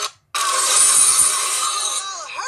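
Several video soundtracks playing at the same time, layered into a dense, harsh jumble with no clear voice or tune. It cuts out almost completely for a split second just after the start, then resumes at full level.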